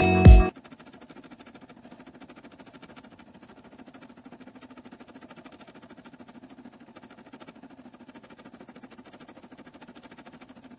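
Background music cuts off about half a second in, leaving a Brother SE600 embroidery machine stitching a design through vinyl: faint, steady, rapid needle strokes.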